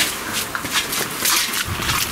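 Footsteps of people walking along a stone-paved path, a steady run of several steps a second.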